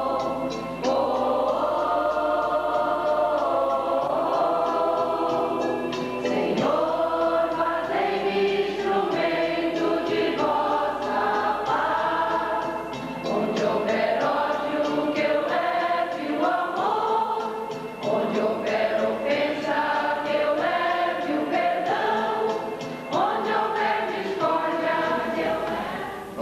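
A choir of mostly women's voices sings a devotional song, one held phrase after another with short breaks between lines.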